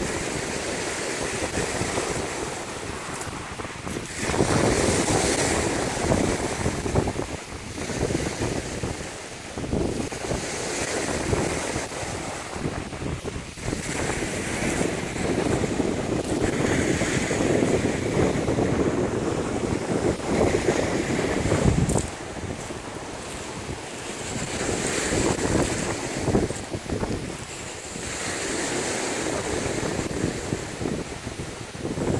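Rough lake waves breaking and washing up a pebbly shore, with wind buffeting the microphone. The noise rises and falls in surges every few seconds.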